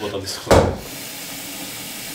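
A single loud thump, then a kitchen tap runs steadily, filling a pot with water.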